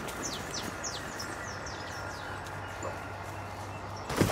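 A bird calling in quick repeated chirps, each a short whistle that falls in pitch, several a second, stopping about two and a half seconds in. A low steady hum lies under it.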